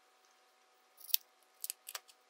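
Three small sharp clicks in the second half as a glass pocket-watch crystal is handled against the watch case; the loudest comes a little past halfway.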